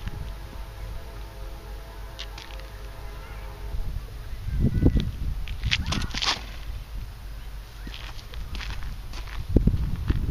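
Outdoor ambience with low rumbling swells on the microphone and a faint steady hum in the first few seconds. Brief scuffs and rustles come about six seconds in as a disc golfer steps through a sidearm throw.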